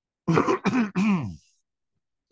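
A man clearing his throat in three quick goes lasting about a second.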